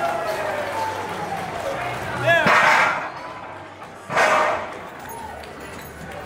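Voices in a busy indoor hall, with two short, loud shouts about two and a half and four seconds in.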